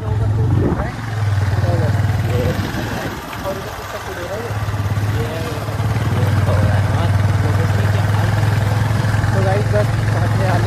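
Motorcycle engine running steadily under way with several riders aboard, easing off for a moment about three seconds in and then pulling again, with wind buffeting the microphone.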